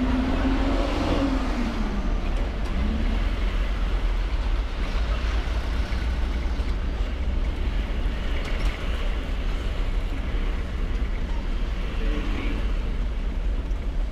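Road noise from a vehicle riding along a street: a steady low rumble of wind on the microphone, with an engine tone that drops in pitch about one to two seconds in.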